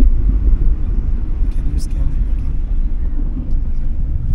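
Car driving along a city street: a steady low rumble of road and wind noise, with indistinct voices underneath.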